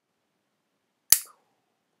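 A single sharp bang from a toy pistol about a second in, with a short ringing tail, heard from the raw footage as it plays back.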